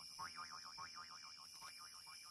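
Cartoon 'boing' sound effect, a springy twang with a fast wobbling pitch, repeated several times and growing fainter.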